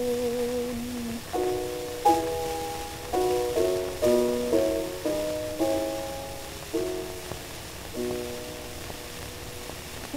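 Early acoustic gramophone recording: a singer's held note ends about a second in, then a piano interlude of about ten chords struck one after another, each dying away. The sound is thin and narrow, with little bass or treble.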